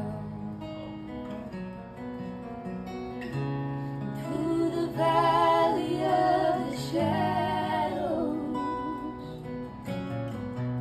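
Acoustic guitar strummed under a small group singing a worship song in harmony, with women's voices leading. The singing is loudest around the middle.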